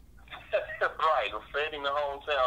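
Speech only: a man talking over a telephone line, his voice thin and narrow.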